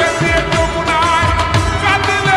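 Bengali song slowed down with heavy reverb: a wavering, ornamented melody line over a deep, steady drum beat.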